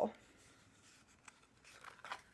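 Quiet handling noise from a small plaque being turned in the hands: a faint click about a second in and soft rustling near the end.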